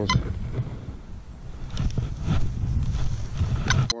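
Wind rumbling on the microphone, with a few faint knocks and rustles.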